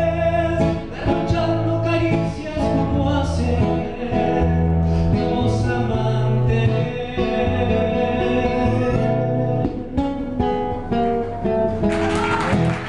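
A man singing a slow song live with acoustic guitar accompaniment, his voice holding long notes over the plucked and strummed guitar.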